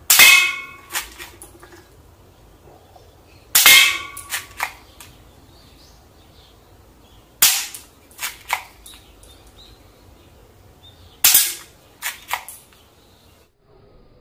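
Sanei Walther P38 spring-air toy pistol firing tsuzumi bullets: four sharp shots about every three and a half to four seconds, each followed by two or three lighter clicks. The first two shots carry a brief ringing tone.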